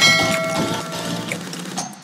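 Subscribe-button animation sound effect: a click, then a bell-like chime that rings on several steady tones and fades over about a second and a half.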